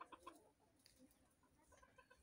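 Near silence, with a few faint short sounds just after the start.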